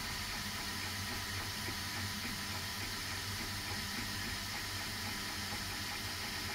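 3D printer running a PLA print: a steady whirring hiss of its fans and motors with a faint low hum, unchanging throughout.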